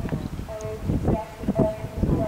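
A horse's hooves thudding on grass turf as it canters, a few dull beats a fraction of a second apart.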